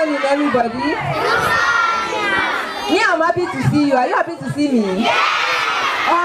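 A large crowd of schoolgirls shouting and cheering together, many voices overlapping, with louder surges about a second in and again near the end.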